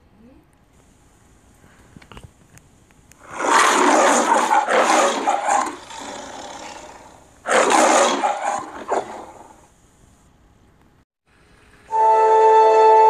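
The MGM logo's lion roar, the 1995 recording of Leo the lion, roaring twice: a long roar about three seconds in and a shorter one about seven seconds in.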